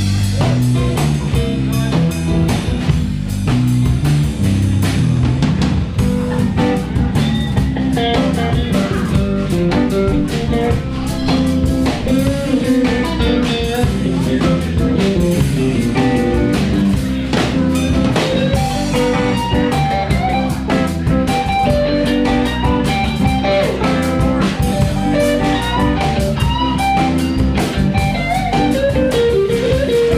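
Blues band playing an instrumental passage with no singing: guitar over a steady drum kit beat.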